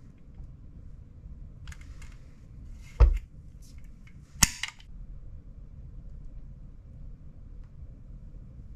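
Hand-held caulking gun clicking sharply twice, about a second and a half apart, as its trigger and plunger are worked while laying a bead of sealant, with soft scraping and handling noises around the clicks.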